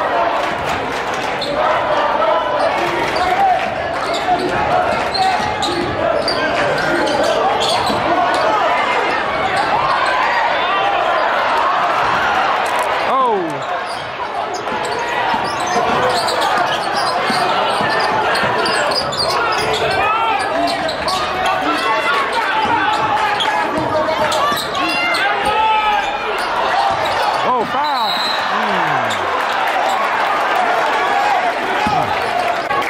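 Basketball game in a large gym: a ball bouncing on the hardwood court amid the crowd's steady voices and shouts. Near the end comes a short high tone, a referee's whistle.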